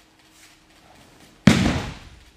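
One sudden loud slam about one and a half seconds in, fading over half a second: an aikido partner's body hitting the tatami mats in a breakfall after a throw.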